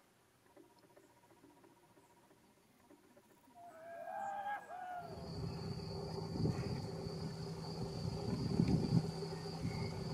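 Quiet at first. About four seconds in come a few short, arching bird calls. Then, from about five seconds, a louder low rumbling background takes over, with a steady high-pitched whine above it.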